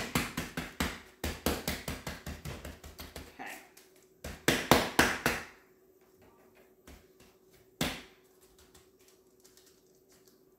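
Gloved hands patting and pressing a Beyond Beef plant-based meat mixture flat on parchment paper over a cutting board: a rapid run of pats, about five a second, for the first three seconds or so, a louder flurry about halfway through, then one more pat later on.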